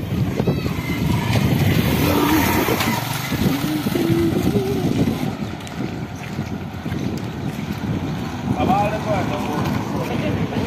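Small motorcycle engine running close by on a street, over a steady rumble of street noise, with voices.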